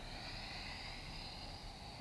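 A woman's long, faint exhale, a breathy hiss that slowly fades away, breathing out into a deeper standing forward fold.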